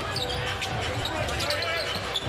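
A basketball being dribbled on a hardwood arena court, repeated thuds several times a second, under the murmur of an indoor arena crowd.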